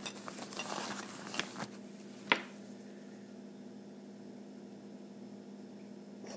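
Hands rummaging in a small woven cosmetic bag: light rustling and handling noises, then one sharp click a little after two seconds as a product is knocked or picked up. After that it is quiet, with a steady low hum.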